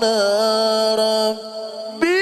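A male qari reciting the Quran in melodic tilawah style, holding one long, steady note that drops away about two-thirds of the way through.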